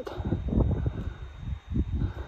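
Wind buffeting a phone microphone on an exposed cliff top: a low, uneven rushing that rises and falls in gusts.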